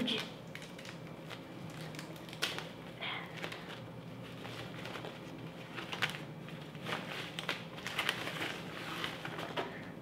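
Thin foam wrapping crinkling and rustling as it is pulled off a portable speaker, with scattered crackles that come thicker in the second half.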